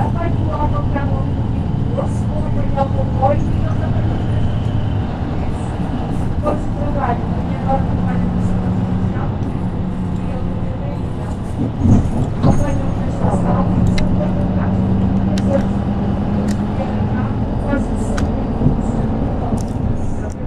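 The inside of a Mercedes-Benz Citaro K city bus on the move. Its OM936 diesel engine drones steadily, with the note climbing slightly in the second half, over light rattles and clicks from the body. Two thumps come about twelve seconds in.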